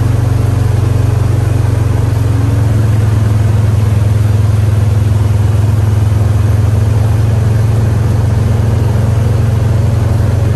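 Vehicle engine running steadily at low speed along a trail, a loud, even deep drone that shifts slightly in pitch about two and a half seconds in.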